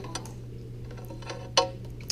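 Light handling clicks of a small plastic e-reader-type flight computer as its USB cable is unplugged and the device is handled, with one sharper click about one and a half seconds in, over a low steady hum.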